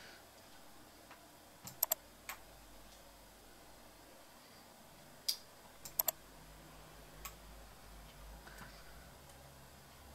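Faint computer mouse clicks, a handful in two small groups, some in quick press-and-release pairs, as the zoom tool is dragged across the map.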